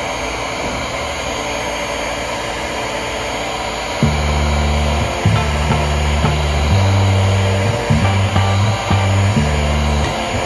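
Electric heat gun blowing steadily, warming dried Barge contact cement on a sneaker midsole to reactivate it. About four seconds in, background music with a plucked bass line comes in over it.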